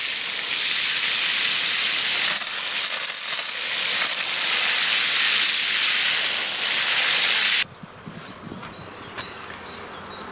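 Garden hose spray nozzle running, a steady hiss of spray with water splashing into a puddle in freshly dug soil, as a newly planted spruce's hole is soaked until the water stands. The spray cuts off abruptly about three-quarters of the way through.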